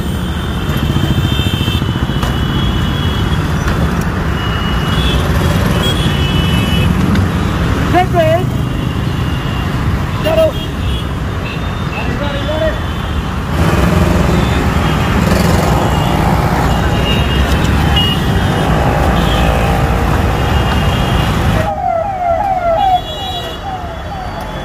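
Road traffic at a busy city intersection: car, scooter and motorcycle engines running and passing in a steady rumble. Short high-pitched tones come and go over it.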